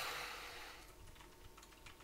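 Faint computer keyboard typing: soft, scattered key clicks.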